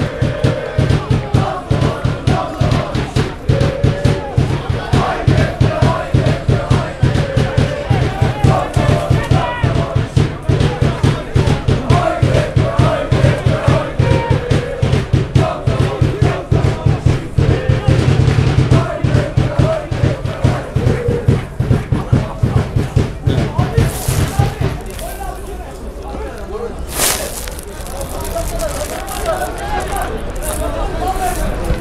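Football supporters chanting together over a steady, fast drum beat. The drumming and chanting stop about 25 seconds in, leaving quieter crowd noise.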